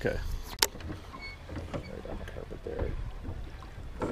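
A fishing reel being handled, with one sharp click about half a second in, over a steady low rumble.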